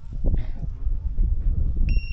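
Wind buffeting the microphone: a loud, gusting low rumble. Just before the end a single steady, high electronic beep starts.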